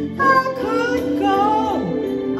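A woman singing solo into a microphone, with a drawbar electric organ sustaining chords beneath her; her voice slides down in pitch near the end.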